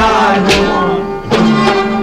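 Kashmiri folk song: a man singing over instrumental accompaniment. It eases off briefly just past a second in, then comes back in full.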